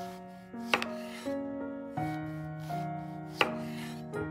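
Chef's knife slicing through a zucchini and hitting a wooden cutting board: two sharp chops, one under a second in and one near the end, over background music.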